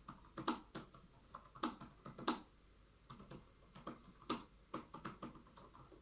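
European hornet chewing wood fibre from a weathered painted surface with its mandibles: irregular dry clicks and crackles, some in quick pairs, with short pauses between.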